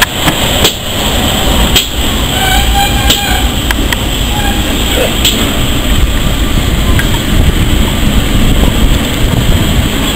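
Railway locomotive moving slowly past: a steady low rumble with sharp knocks and clanks, heaviest in the first few seconds.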